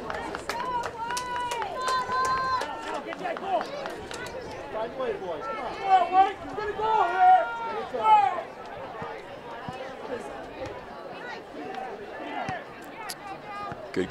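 Voices shouting and calling across a soccer field, loudest about one to three seconds in and again about six to eight seconds in, over faint crowd chatter.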